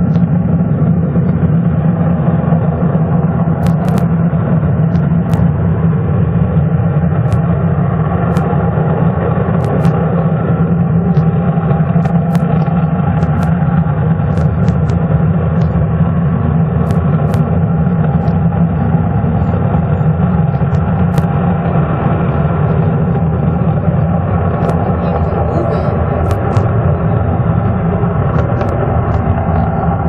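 B-1B Lancer bomber's four afterburning turbofan engines at full power for takeoff: a loud, steady, deep jet engine noise that does not let up.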